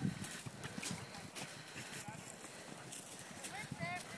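Several horses' hooves clip-clopping in an irregular patter as mounted riders move off, with a few short high rising calls near the end.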